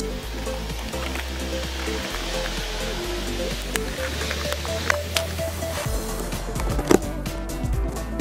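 Background music with a steady bass line, over the scraping of a knife slitting the packing tape on a cardboard box and the rustle of its flaps being pulled open, with a few sharp cardboard cracks, the loudest near the end.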